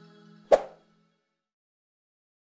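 The last faint notes of outro music die away, then a single sharp pop-like click sound effect about half a second in: the mouse-click sound of an animated subscribe button on the end card.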